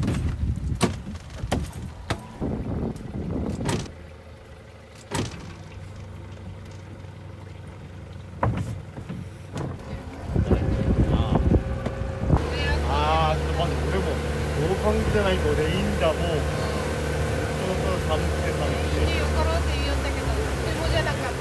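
A series of sharp knocks and clatters, then, from about twelve seconds in, the ferry boat's engine running at a steady idle with a low hum.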